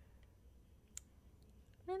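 Quiet pause with a low steady hum and a single short click about halfway through; a voice starts speaking near the end.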